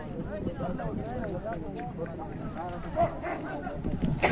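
Crowd of men talking and calling at once, indistinct and overlapping, as a steady background babble.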